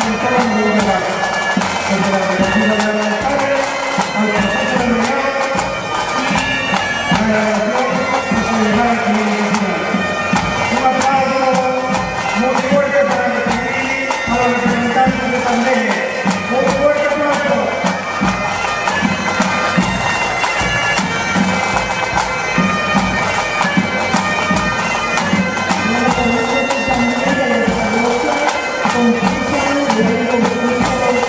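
Pipe band playing: several bagpipes sounding a melody together, with marching drums beneath.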